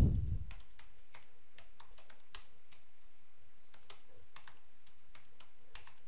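Computer keyboard typing: irregular keystrokes as a short phrase is typed, with a low thump right at the start.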